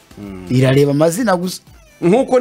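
A man's voice holding one drawn-out sound for about a second, its pitch rising near the end, then dropping away.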